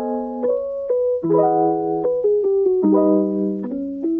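Background piano music: chords and single notes struck one after another, each ringing and fading.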